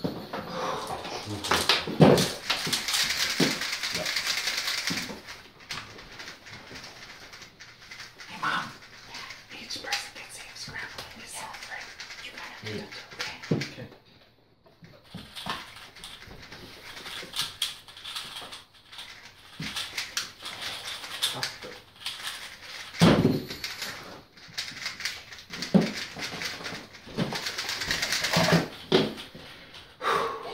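Plastic 3x3 speed cubes being turned rapidly by hand: a fast, continuous clatter of small clicks, louder and brighter near the start and again near the end.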